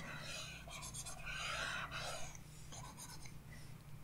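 Faint, irregular scratching and rubbing strokes from a pointing device being dragged over its pad while brush strokes are painted.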